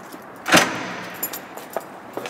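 A wooden entrance door's lock and latch: one sharp clack about half a second in as it releases, dying away, then a few light clicks and rattles as the door is pulled open.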